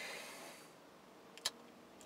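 Quiet room tone inside a truck cab: a faint hiss fades out within the first half second, then one short, sharp click sounds about one and a half seconds in.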